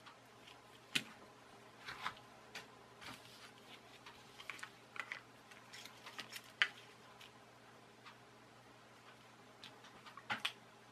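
Scattered light plastic clicks and taps as the small plastic parts of a dismantled toy car are handled and set down on a table, irregular and sparse, the sharpest about a second in.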